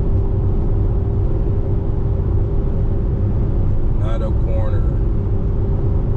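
Steady road and engine rumble of a car travelling at highway speed, heard from inside the cabin, with a steady hum running under it.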